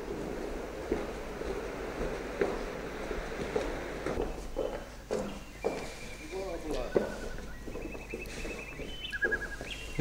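Scattered footsteps on a wooden floor over a steady hiss while sacks of hops are carried; from about four seconds in, indistinct voices talk in the background.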